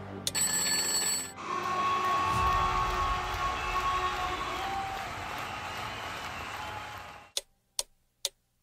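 A countdown timer's bell rings briefly, like an alarm clock, as the count runs out. It is followed by about six seconds of stadium crowd noise, which cuts off suddenly near the end, when clock ticks start again at about two a second.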